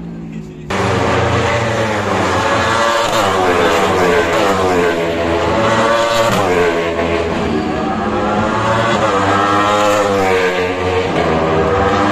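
Formula E electric race cars passing on a street circuit: a loud, high motor whine that wavers up and down in pitch, starting abruptly about a second in.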